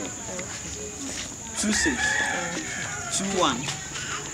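A rooster crowing once, a long call starting about one and a half seconds in, with people's voices around it.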